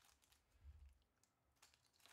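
Faint crinkling and a few light clicks of a small clear plastic bag being pulled open by hand.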